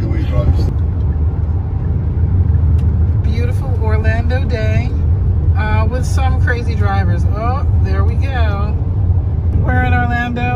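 Steady low rumble of a car's engine and tyres on the highway, heard inside the moving car's cabin, with voices over it.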